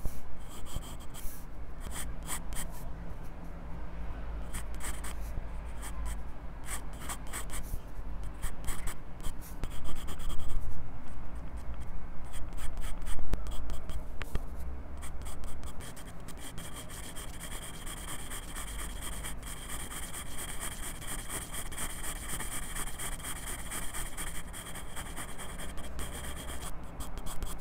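Graphite pencil scratching on sketchbook paper in many short, quick strokes, heard very close through a clip-on microphone fastened to the pencil. The strokes come in dense clusters at first, then settle into a steadier run of scratching over the last ten seconds.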